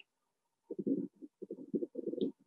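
Faint, muffled voice sounds in short broken bits, starting about two-thirds of a second in, with only low tones coming through.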